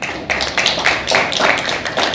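Handheld microphone knocked and rubbed as it is passed from hand to hand: a quick, irregular run of loud knocks and scrapes, about three a second.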